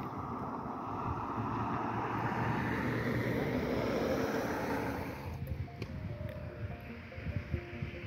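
A rushing outdoor noise that builds over the first few seconds and drops away suddenly about five seconds in, followed by faint background music with a few held notes.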